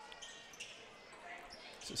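A basketball bouncing off the rim and floor on a missed free throw, faint over low gym crowd noise.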